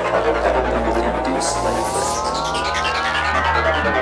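Electronic psytrance intro: a synthesizer riser, several tones gliding slowly upward together over a low steady drone, building up before the beat comes in.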